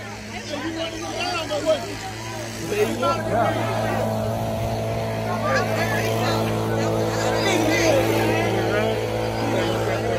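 A vehicle engine running at a steady idle, heard as a constant hum under crowd chatter and voices.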